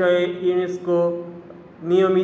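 A man's voice drawing out repeated syllables in a steady, chant-like sing-song, with a short pause shortly before the end.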